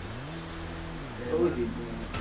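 A motor vehicle engine running in the background, its pitch rising, holding, then falling away over about a second and a half.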